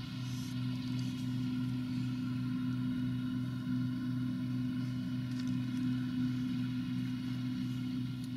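Claas Dominator combine harvester, converted for threshing pumpkins, running steadily under load: a constant, even drone with a steady hum.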